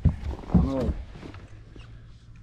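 A man's short, wordless vocal exclamation about half a second in, followed by a faint steady low hum.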